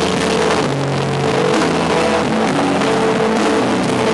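Live indie/emo rock band playing loud: distorted electric guitars hold chords that change every second or so over drums and cymbals.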